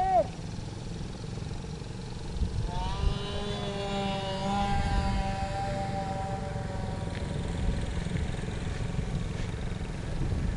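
A motor's whine, a stack of pitched tones that comes in with a short rise about three seconds in, holds steady, then fades out by about seven and a half seconds. Wind rumbles on the microphone underneath.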